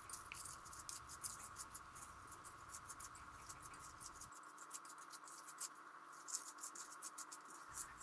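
Faint sticky clicking and scraping of a silicone spatula mixing crunchy cereal and hazelnuts into melted chocolate in a bowl: many small, irregular ticks.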